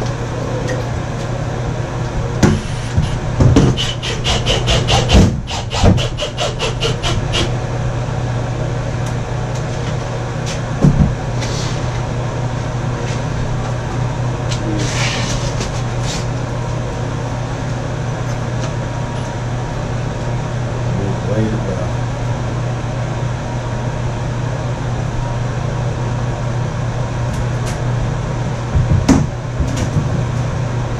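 Knocks and tapping from a bathtub being worked into place and fastened, with a rapid run of clicks a few seconds in and single knocks later, over a steady low hum.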